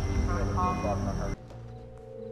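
Muffled voices over loud low background noise with a steady high whine, cut off abruptly about two-thirds of the way in and replaced by quiet, sustained music notes.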